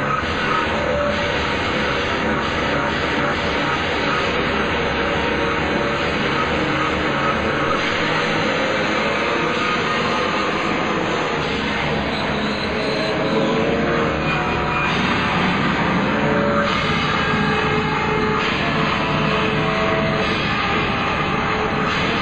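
A live post-punk band playing loud, dense rock with electric guitar and drums, without a break. It is picked up by a small pocket camera's microphone close to the stage.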